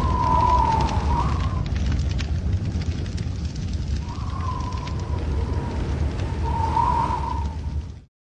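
Cinematic title sound effect: a steady low rumble with faint crackling, and a thin wavering tone that fades in and out above it twice. It cuts off abruptly at the end.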